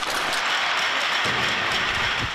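Several people applauding, a steady even clapping that stops just after the two seconds.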